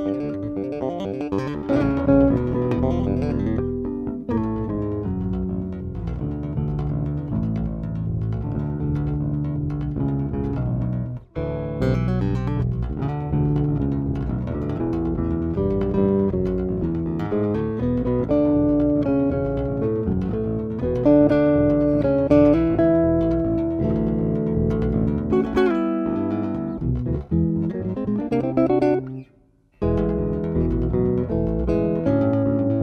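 Three six-string electric basses (a Roscoe LG 3006 and an Ibanez SRSC 806) playing a composed trio in interlocking parts: one bass runs steady fast notes while the other two carry longer melodic lines. There are two brief breaks, about eleven seconds in and just before the end.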